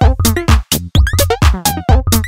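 Minimal tech house track playing: a steady drum-machine beat about twice a second, with short clicky percussion and brief synth notes that slide in pitch between the beats.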